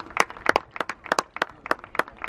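Scattered hand claps from a group of people, uneven and overlapping, about five a second.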